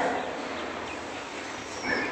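Steady, even hiss of background noise with no distinct event in it.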